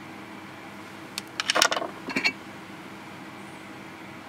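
Rough opal pieces clicking and clinking together as they are handled, a quick cluster of small hard knocks about a second and a half in and two more shortly after, over a faint steady hum.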